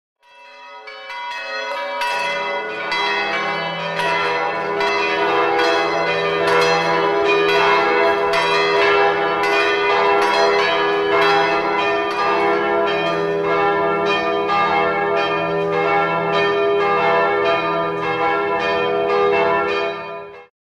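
Church bells ringing, struck over and over in quick, even succession with their long hum sustaining underneath. The sound fades in over the first two seconds.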